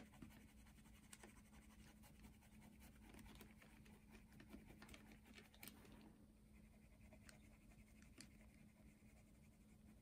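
Faint scratching of a watercolour pencil shading on drawing paper, with small scattered ticks and a low steady hum underneath.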